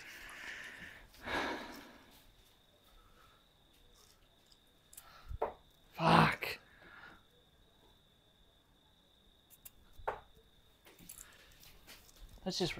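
Steel-tip darts striking a Winmau Blade bristle dartboard: a few sharp hits spread several seconds apart. Short breaths and a brief grunt-like sound come in between.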